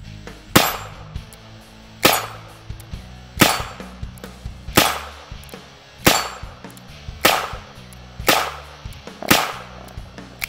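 Smith & Wesson 317 .22 LR revolver fired eight times at a steady pace, about one shot every second and a quarter, emptying its eight-round cylinder. Background music plays underneath.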